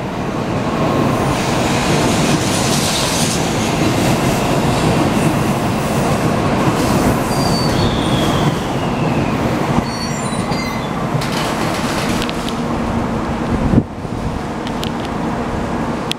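JR Central N700-2000 series (N700A) Shinkansen accelerating away from the platform, its cars rushing past close by with steady wheel and running noise and a few brief high squealing tones. A sharp thump comes near the end, after which the noise drops.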